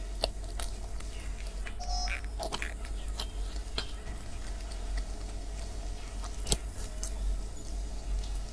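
Close-up mouth sounds of someone eating a soft sponge-cake dessert: chewing and small wet mouth noises, with scattered light clicks and taps from a plastic spoon and a clear plastic dessert box. The sharpest click comes about six and a half seconds in.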